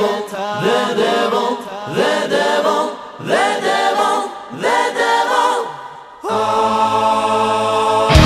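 Choir singing in short swelling phrases whose pitch bends up and down, then one long held chord from about six seconds in. This is a choral passage in a symphonic power metal song.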